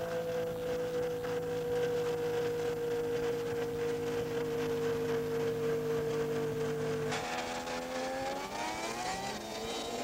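Snowmobile engines running as the sleds pull away across the ice: one steady, high engine note falls slowly in pitch as it moves off. About seven seconds in the sound changes abruptly, and an engine note climbs as a sled revs up.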